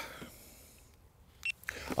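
Mostly quiet background, with the tail of a man's word at the start and a short intake of breath about one and a half seconds in.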